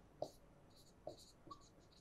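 Faint stylus strokes on an interactive display screen while writing, a few short scratches spread through the quiet.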